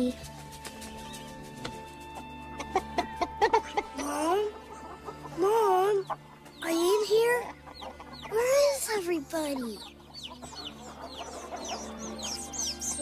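Hens clucking and squawking in a run of loud rising-and-falling calls, with chicks peeping high near the end, over background music.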